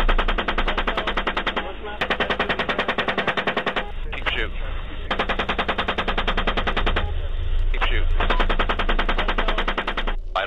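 Rapid automatic gunfire in several long bursts, heard through narrow, radio-like audio, with short bits of radio voice between the bursts.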